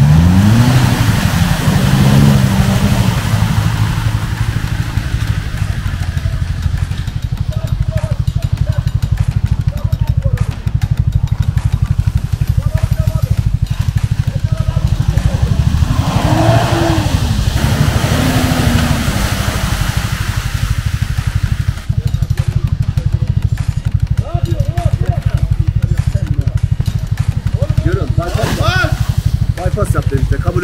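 Off-road 4x4 engines revving up and easing off as the vehicles push through deep mud, over a steady low engine rumble; the revs climb near the start, swell again about halfway through and once more near the end.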